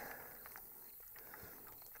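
Near silence: faint background hiss with a few soft, faint clicks.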